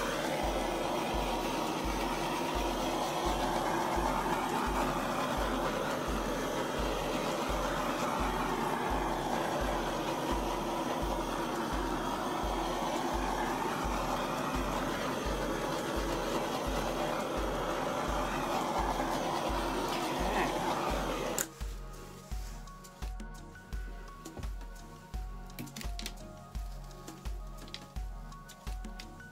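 Handheld torch flame hissing steadily as it is passed over wet acrylic paint to pop air bubbles. It cuts off suddenly about three quarters of the way through, leaving background music with a steady beat.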